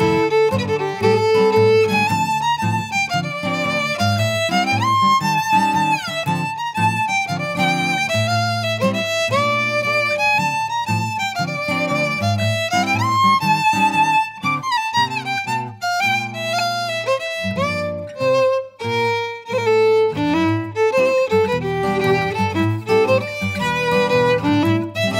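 Scottish traditional fiddle playing a tune, with sliding notes in the melody over a low sustained accompaniment.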